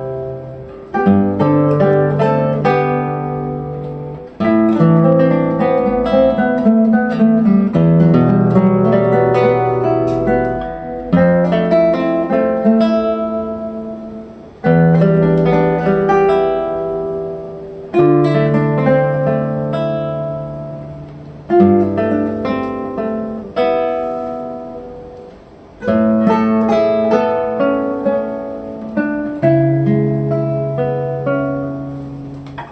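Two classical guitars, a 1988 Nejime Ohno and a 2011 Sakae Ishii, playing a duet. A plucked melody runs over held bass notes, with each phrase struck afresh every three to four seconds and left ringing away.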